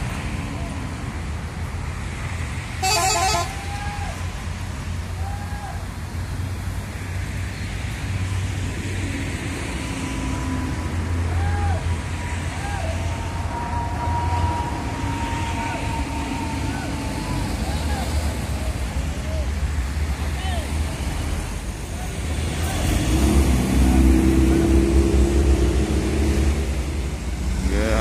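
Scania K410iB coach's diesel engine rumbling as it pulls in and stands, with one short horn toot about three seconds in. The rumble swells louder near the end.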